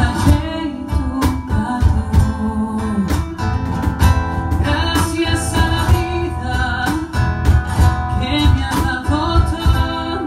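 A live duet of steadily strummed acoustic guitar and a man singing into a microphone, a slow Latin American folk ballad.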